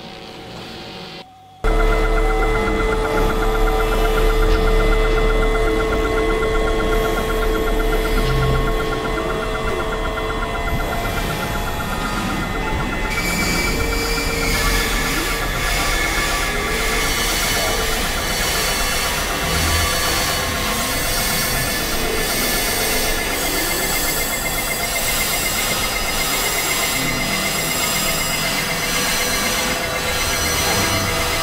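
Experimental electronic noise music: a dense, harsh synthesizer drone with steady held tones and a heavy low rumble. It cuts in loud after a brief drop about a second and a half in, and a little before halfway the texture brightens with more hiss on top.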